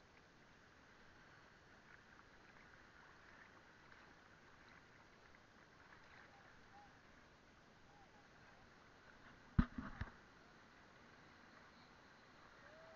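Faint, steady water sound from small waves at a camera held at the sea's surface. Near the end come two sharp splashes or knocks against the camera, about half a second apart.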